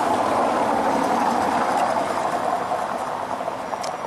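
Tatra T3 tram rolling slowly over street track, a steady rumbling rush of wheels and running gear that eases a little in the second half, with one sharp click near the end.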